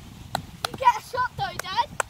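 High, excited voices calling out without clear words, with a few sharp claps or knocks in the first half.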